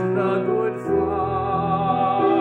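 A man singing solo, holding notes with vibrato, over sustained keyboard chords.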